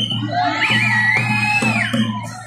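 Drum-led music with a regular beat, under the noise of a large crowd; a long high-pitched cry rises over it about half a second in, wavers, then holds for about a second.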